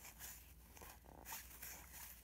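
Faint rustle and scrape of cardboard baseball cards sliding against one another as a stack is thumbed through.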